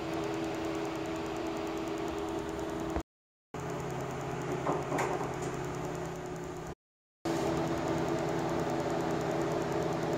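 Steady background hum and hiss of room noise. It cuts out abruptly to silence twice, about three and seven seconds in, and a few faint knocks or rustles come about five seconds in.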